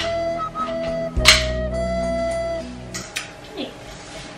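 Background music with held melody notes over a bass line and a sharp hit about a second in, stopping about three seconds in.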